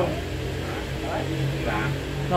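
A motor running steadily with a low hum, with faint voices over it.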